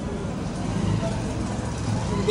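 Busy street background: a steady low rumble of traffic with people talking.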